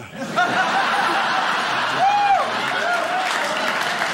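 A theatre audience laughing and applauding after a punchline, a dense steady wash of clapping and laughter, with single laughs rising and falling through it.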